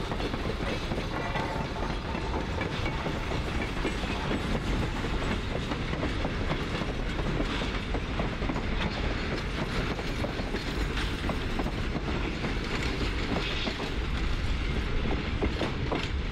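Freight train of loaded ore cars rolling on the rails, a steady rumble with continual clicking and clatter of the wheels.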